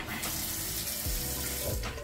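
Water running from a sink tap for about a second and a half, turned on just after the start and shut off near the end.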